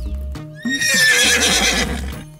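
A horse whinny, starting about half a second in, with a shaky falling pitch, over background music with a low beat.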